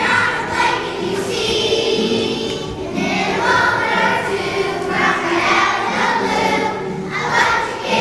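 A choir of first-grade children singing a song together.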